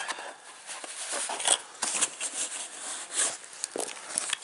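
Brown paper bag rustling and crinkling in irregular bursts as hands open it and pull out the inverter's red and black battery cables.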